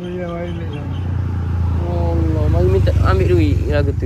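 An elderly man speaking haltingly, over the low rumble of a motor vehicle engine that grows louder from about a second in.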